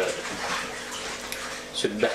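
Running water, a steady rush between stretches of a man's speech.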